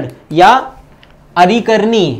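Only speech: a man lecturing in Hindi, with a short pause in the middle.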